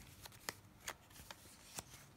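Paper pages of a small journal being handled and turned: three faint, crisp paper ticks over a soft rustle.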